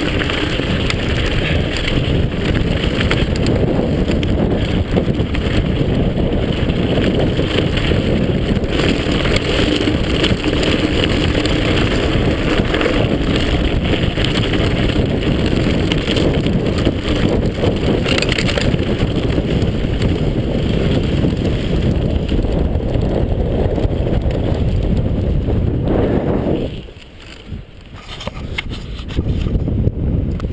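A mountain bike rattling down a rocky, gravelly trail, with wind buffeting the microphone: a dense, rough noise broken by many small knocks. About 27 seconds in it drops away sharply for a moment, then picks up again near the end.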